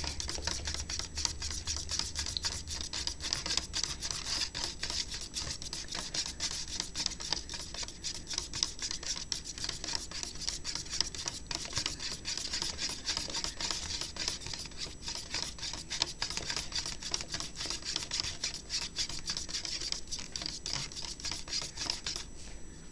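Metal spoon stirring a glue-and-water mixture hard inside a plastic cup: quick, continuous scraping and rubbing strokes against the cup's sides.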